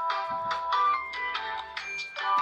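Smartphone ringtone playing for an incoming call: a melody of chiming, pitched notes, a few a second.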